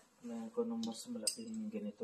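A man's voice speaking briefly in short broken phrases.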